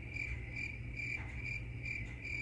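Cricket chirping sound effect: a steady run of short, even chirps, a little over two a second, the stock gag for an awkward silence after an unanswered question.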